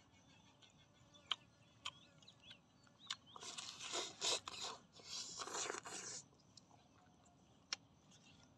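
Close-up eating sounds of a man biting into grilled meat on the bone, tearing it off and chewing: a few sharp clicks, then two longer, louder stretches of chewing and tearing about three and a half and five and a half seconds in, and one more click near the end.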